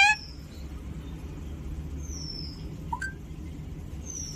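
Alexandrine parakeet calling softly. A loud call cuts off at the very start, then a thin high whistle slides downward about halfway through, and a short rising chirp follows about a second later.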